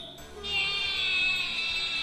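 Battery-powered animated Halloween doll playing its sound clip through its small built-in speaker: a high, sung, music-like phrase. It pauses briefly at the start, then holds one long high note.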